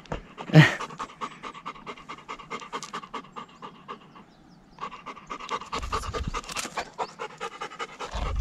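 Golden retriever panting hard and fast, about five breaths a second, after a steep climb, with a short break in the panting a little past halfway.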